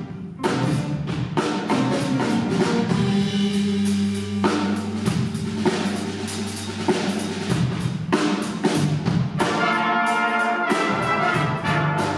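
Jazz big band playing: brass section chords over drum kit and bass. A brief break at the very start, then the full band comes back in on a hit.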